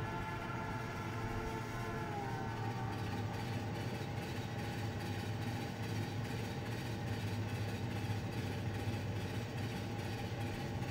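A steady, low rumble of a train running, as a cartoon sound effect. A few faint tones fade out during the first two seconds or so.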